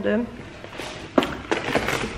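Handling noise as belongings are gathered up: rustling and a few light knocks, with one sharp click about a second in.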